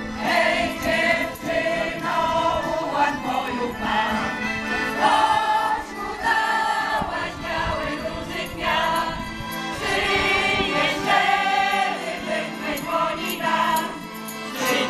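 Large choir of women and men from folk ensembles singing a Polish patriotic song together, in phrases of held notes.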